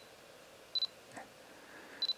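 Canon EOS R6 autofocus-confirmation beep: one short, high beep a little under a second in, the signal that focus has locked on the subject in dim light. The rest is near silence.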